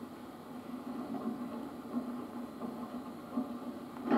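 Steady background hiss of an old videotape soundtrack, with a few faint soft thumps about halfway through and near the end.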